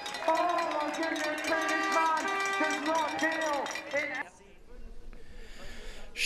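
A voice, mixed with held tones, goes on for about four seconds and then cuts off suddenly, leaving only a faint hiss.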